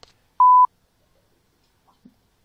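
A single short, steady electronic beep lasting about a quarter of a second, a little under half a second in: a censor bleep dubbed over the sound track.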